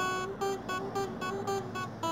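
Acoustic guitar played solo: a melody of single plucked notes, about four a second, each note ringing briefly before the next.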